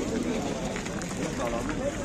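Background talk of several people, quieter than the close speech around it, over a steady outdoor noise.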